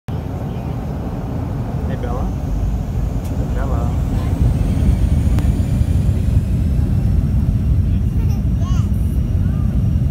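Aircraft cabin noise: the steady low rumble of engines and airflow, growing gradually louder, with a faint high whine rising slowly in pitch. Short, quiet voice sounds come through it a few times.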